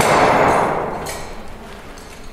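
Porcelain wrapped in a cloth bundle being smashed: one sudden, muffled crunching crash that dies away over about a second.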